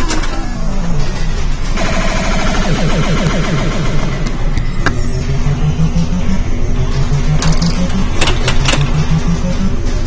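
Gottlieb Black Hole pinball machine playing its electronic game-start sounds: a falling tone, then a busy run of rising and falling electronic tones and jingles. Other machines in the arcade make a steady din underneath.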